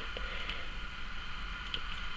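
Quiet room tone: a steady hum and hiss, with a couple of faint ticks.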